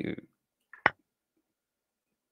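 A single sharp click as a chess piece is moved on an online chessboard. It is either the move sound of the lichess board or a mouse click. The click follows the tail end of a man's speech.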